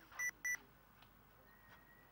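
Two short, high electronic beeps in quick succession, followed by a faint steady high tone.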